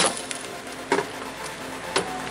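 Light metallic clinks from a socket and extension working the 10 mm bolts of a car's underbody shield plate, with one sharp click about a second in.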